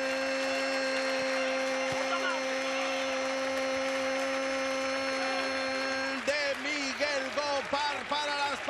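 A male football commentator's goal call: one long shouted vowel held at a steady pitch for about six seconds, then breaking into rapid excited speech near the end.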